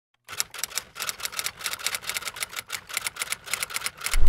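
Rapid typewriter keystrokes, about six or seven clacks a second in an uneven typing rhythm, starting a moment in.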